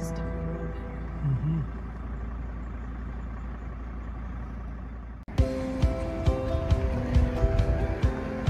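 A woman's short laugh, then a steady outdoor hiss with a low rumble. About five seconds in, it cuts off and background music with held, piano-like notes begins.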